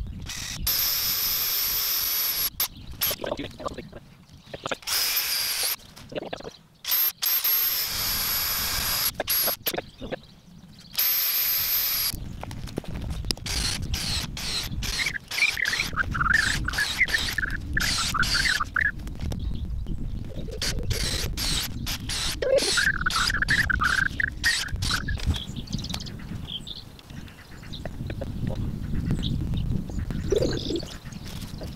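Cordless drill boring holes into a log, running in several short bursts with a high steady whine over the first twelve seconds or so. Later, a bird calls in short warbling phrases.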